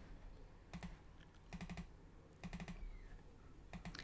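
Faint clicking of computer mouse buttons and keys, in four short clusters of quick clicks, as on-screen items are selected and deleted.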